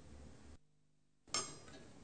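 Faint room tone, broken by a moment of dead silence, then a single sharp clink with a brief ringing tail about a second and a half in. It is the sound of glass and metal apparatus being set on or handled at a triple beam balance.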